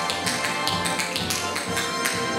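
Tap dancing: tap shoes striking the floor in a run of quick, unevenly spaced taps over instrumental backing music.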